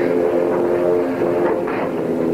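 A steady drone of several held low tones from an old TV movie's soundtrack, with no speech.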